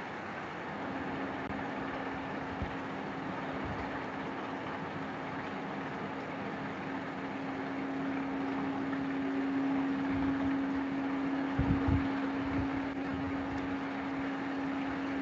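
Steady background hiss with a low, even hum, room noise carried through an open video-call microphone, with a few soft low thumps near the end.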